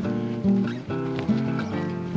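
Background music: held pitched notes that change in steps, with a few light clicks.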